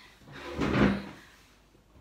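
A short scraping, sliding sound that swells and fades over about a second, with no speech: a bottle being handled and slid down onto a tabletop.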